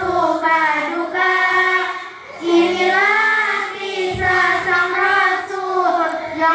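A group of girls singing together in unison into a microphone, with held, gliding sung lines and a short breath pause about two seconds in. There is a faint low thump about four seconds in.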